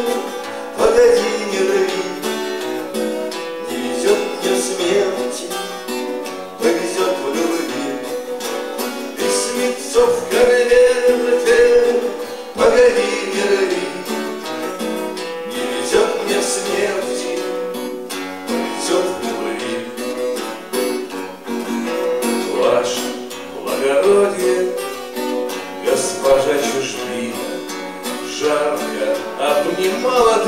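Live acoustic guitars strummed and picked, with a man singing a Russian bard song into a microphone.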